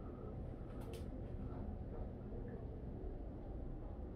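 Yacht cabin air conditioning running with a low, steady rumble. Two faint clicks come just before the one-second mark.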